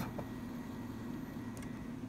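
Faint, steady running hum of an opened Intel Mac mini (model 1,1), with a faint tick about one and a half seconds in.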